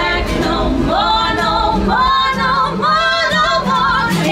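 Live singing by female voices in harmony, long held notes with vibrato, over a steady low accompaniment from an acoustic guitar.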